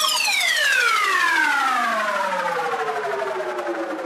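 Electronic music breakdown: a single siren-like synth tone glides steadily downward in pitch over about four seconds and slowly fades, with the beat dropped out.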